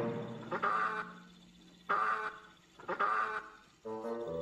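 A cartoon goose honking three times, about a second apart.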